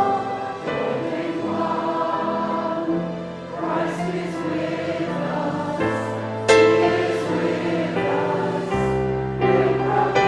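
A group of voices singing a worship hymn together over instrumental accompaniment, in long held notes with changing chords.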